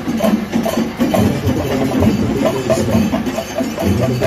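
Loud percussion-led music with a fast, steady beat of repeated strikes and a deep low pulse that comes and goes.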